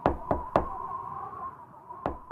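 Three quick knocks, about a quarter second apart, as the song's closing sound effect, with a faint steady tone lingering underneath.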